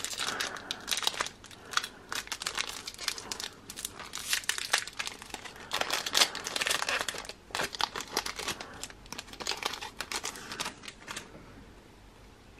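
Foil trading-card pack crinkling and tearing as it is opened by hand, a dense run of crackles that dies away shortly before the end.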